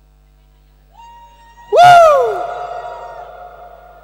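A loud hooting whoop from a man's voice through a karaoke microphone, sweeping up and then down in pitch, with a long echoing tail that fades over about a second and a half.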